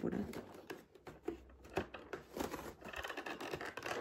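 Cardboard advent calendar door being torn open by hand: a run of short scratchy rustles, tears and clicks of card and paper.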